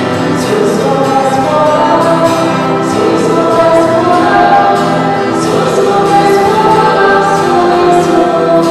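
Choir singing a Christian hymn with musical accompaniment, in long held notes.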